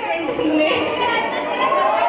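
Speech with chatter: voices talking over one another.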